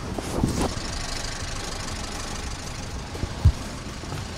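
Steady street-traffic noise with a motor vehicle's engine running nearby, and a single sharp thump about three and a half seconds in.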